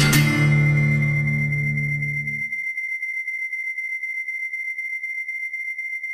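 Instrumental post-rock guitar music coming to an end: a last strummed chord rings out and fades away over about two and a half seconds. A thin, steady high tone is left holding on its own.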